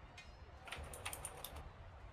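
Faint clicking of typing on a computer keyboard, a run of light keystrokes.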